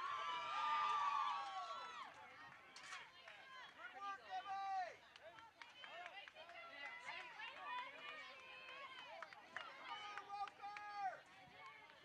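Distant shouts and calls of voices across a soccer field, players and spectators calling out, with a long high call near the start.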